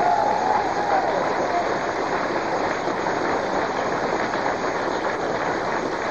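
Large audience applauding, a steady dense clatter of clapping, with some cheering near the start.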